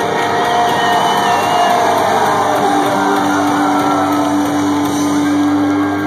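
Live rock band holding out a sustained closing chord on amplified electric guitars, with the crowd cheering and whooping over it.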